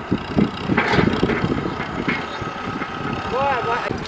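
Farm tractor with a front dozer blade running as it drives closer over stubble, its engine noise mixed with frequent light rattles and knocks, and people's voices over it.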